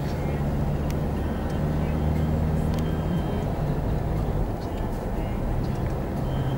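Steady engine drone and tyre and road noise of a car cruising at highway speed, heard from inside the cabin.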